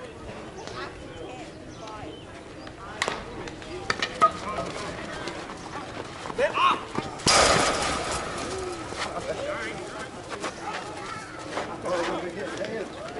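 A metal bat hits a slowpitch softball with a sharp crack a few seconds in, followed by a second knock, over players' shouts and chatter. Just past the middle there is a loud, sudden burst of noise lasting about a second.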